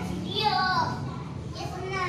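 High-pitched child's voice calling out twice, once about half a second in and again near the end, with no clear words.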